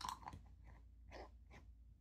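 Near silence with a soft click at the start and a few faint rustles of a hand handling things on a desk.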